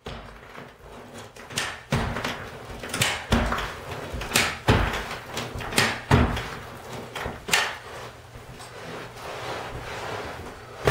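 Metal carpet stretcher being worked along the carpet: sharp knocks in pairs about every second and a half as the tool is set into the carpet and its lever pushed, with scuffing of carpet between strokes. The knocks fade out near the end.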